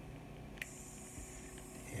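Quiet room tone with a faint steady hum and one light click about half a second in.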